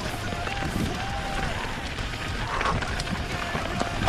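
Full-suspension mountain bike (2017 Diamondback Atroz Comp) ridden fast along a dirt singletrack strewn with dry leaves: tyres rolling over dirt and leaves and the bike rattling over bumps, under a steady low rumble of wind on the microphone.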